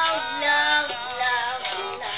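A young child singing in a high voice, holding long notes that slide between pitches, with a small toy ukulele strummed along.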